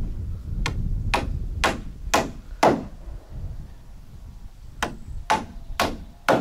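Hammer blows on the timber floor frame, a steady run of five strikes about two a second, then after a pause three more, over a low steady rumble.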